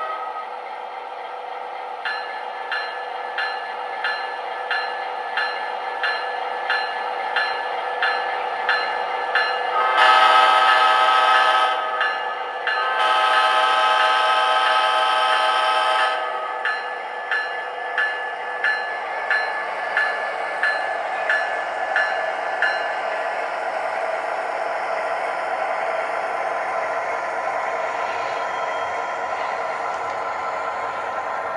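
O gauge model Amtrak P42 diesel locomotive's onboard sound system ringing its bell, about one and a half strokes a second, with two long horn blasts in the middle, the second longer, as the train pulls away. After the bell stops, a steady diesel running sound and wheels rolling on the track carry on.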